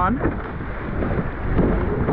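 Wind rumbling on the microphone over the rush and splash of water around a rowed surf boat in choppy sea.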